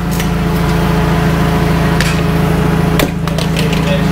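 Forklift engine running steadily while it holds a side-by-side up on its forks, with two sharp knocks about two and three seconds in.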